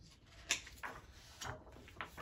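Hands handling and turning a stiff cardboard page of a board book: a sharp tap about half a second in, then a few softer brushing strokes.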